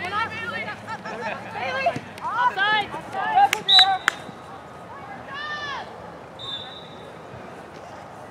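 Shouts and calls from players and sideline spectators at a youth soccer match. A few sharp thuds of the ball being kicked come about three and a half seconds in, and there are two short, high referee's whistle blasts, one right after the thuds and one near the three-quarter mark.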